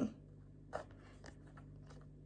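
Faint handling of a deck of reading cards: a few soft clicks and rustles as the cards are moved and shuffled in the hands, the clearest about three-quarters of a second in, over a low steady hum.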